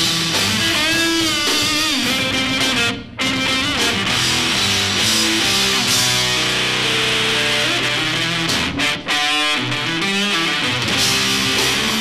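Live rock band playing an instrumental passage: distorted electric guitar, electric bass and drum kit. The sound drops out briefly twice, about three seconds in and again about nine seconds in.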